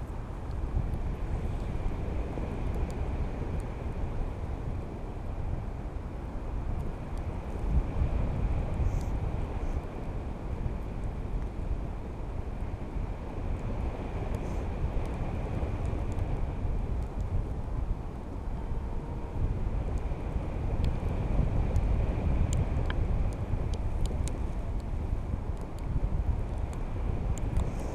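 Wind noise on the camera microphone from the airflow of a paraglider in flight: a steady, gusty low rushing that rises and falls with no break.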